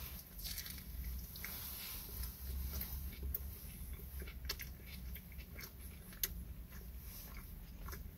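A person biting into a sandwich roll and chewing it. The chewing is faint, a scatter of soft mouth clicks over a low steady hum.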